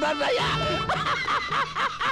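A man's voice in quick rhythmic pulses, about six a second, each rising and falling in pitch, over sustained background music.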